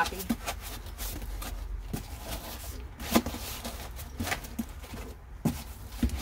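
Cardboard box flaps being pressed and folded down by hand: a scatter of short creaks, rustles and soft knocks, roughly one a second.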